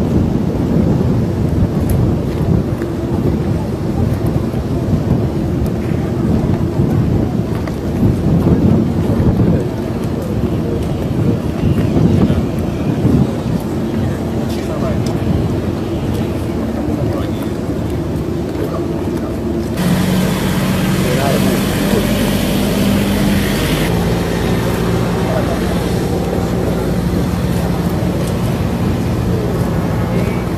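Jet engines of a four-engine U.S. Air Force C-17 cargo plane running as it taxis, a deep uneven rumble with wind buffeting the microphone. About two-thirds of the way in the sound changes to a steadier engine hum with a high hiss over it.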